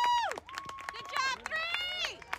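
High-pitched voices from a baseball crowd yelling as a ball is put in play: a long held yell that breaks off about half a second in, then more drawn-out shouts, with scattered sharp clicks between them.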